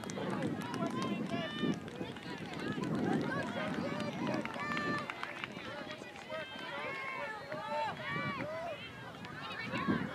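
Many teenage girls' and spectators' voices calling and shouting at once across a soccer field, overlapping so that no words come through.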